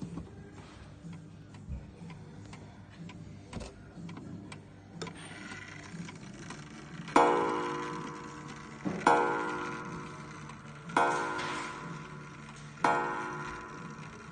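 Ansonia 8-day gingerbread mantel clock striking the hour on its coiled wire gong. After some faint clicks, the hammer strikes four times about two seconds apart, each blow ringing out and fading. With the hands at twelve, this is the start of the twelve o'clock count.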